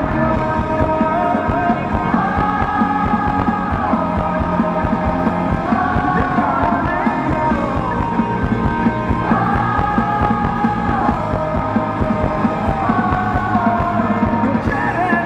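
Live rock band music: electric guitars and drums, with sustained chords that change every couple of seconds over a steady beat.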